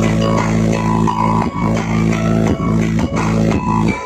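Loud electronic dance music played through a large outdoor sound system, with a heavy, sustained bass that pulses about twice a second and drops out at the very end.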